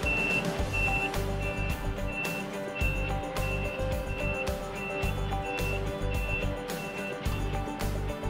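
Vertical mast lift's motion alarm beeping steadily as the platform rises: a short high beep about twice a second, stopping near the end, over background music.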